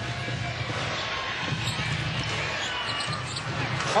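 A basketball being dribbled on a hardwood court over the steady noise of an arena crowd during live play.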